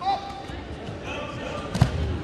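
Wrestlers' bodies hitting the mat with a single heavy thud near the end, as a takedown drives both to the mat, over faint voices in the background.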